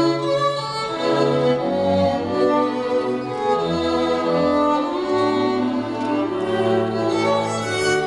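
A string quartet of two violins, viola and cello playing a tango piece, the violins holding bowed notes over a moving cello line.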